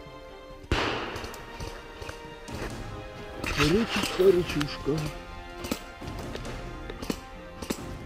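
Background music, cut off about a second in by loud jostling and handling noise on a moving body-worn camera. A few sharp cracks of airsoft gunfire follow, and in the middle a voice calls out without clear words.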